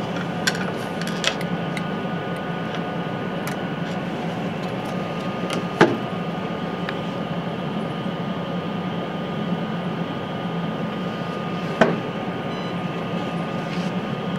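Steady mechanical hum of room ventilation and the instrument, with a few sharp clicks from handling the polarimeter's sample tube and compartment. The louder clicks come about six seconds in and again near the end.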